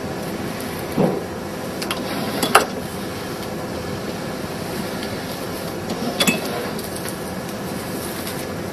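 Suzumo SVR-NNY maki sushi robot running through a cycle that forms and delivers a sheet of rice onto its board. Its running noise is steady, with sharp mechanical clunks about a second in, at two and a half seconds (the loudest), and again about six seconds in.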